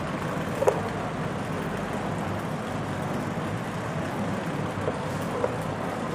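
Steady background noise with a few faint taps and knocks from a wooden ruler and marker being worked against a whiteboard, the clearest about a second in.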